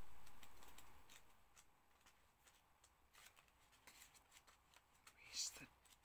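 Near silence: room tone with scattered faint clicks and rustles, and a short breathy sound near the end.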